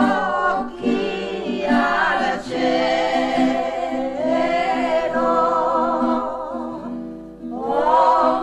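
A group of women singing a traditional Piedmontese rice-field folk song together, in long sung phrases with short pauses between them.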